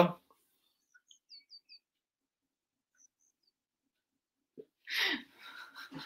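A quiet room with a few faint, short, high chirps about a second in, then a brief stretch of a person's voice near the end.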